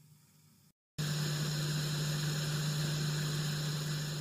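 A steady low electrical hum under an even hiss of static, starting suddenly about a second in and holding level.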